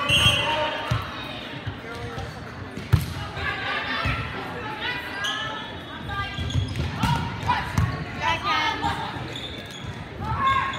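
Volleyball play in a large, echoing gym hall: thuds of the ball being served, passed and hit, with one sharp hit about three seconds in, under players and spectators calling out and talking.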